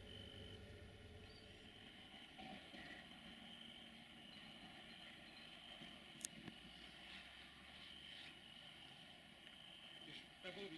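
Near silence: faint outdoor ambience with a steady high insect chirring and a low faint rumble, broken by one sharp click about six seconds in.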